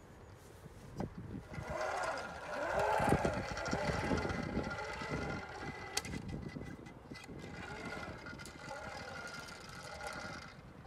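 Playground zip line trolley running along its steel cable: a rolling rumble with a faint whine that builds after a knock about a second in, a sharp clack around six seconds as the seat reaches the far end, then a softer rumble as it rolls back.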